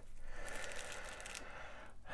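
Coconut-husk fibres and roots crackling and rustling as fingers pull apart a Hoya's root ball, thinning out after about a second and a half.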